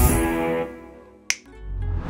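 Intro sting music: held chords fading out, then a single sharp snap about a second and a quarter in, followed by a low rumbling swell.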